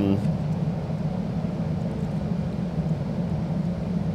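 Steady low hum of background room noise.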